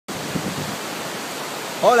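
River water rushing over rapids, a steady rush of noise. A man's voice starts speaking near the end.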